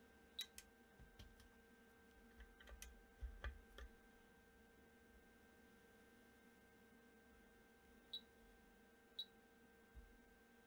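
Near silence with a few faint clicks from pressing a bench multimeter's front-panel buttons and plugging test leads into a resistance box, then two short faint ticks near the end.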